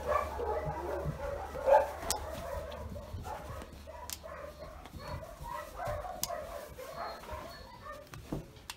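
A puppy whining and yelping over and over while its claws are clipped. The nail clipper snaps three times, about two seconds apart.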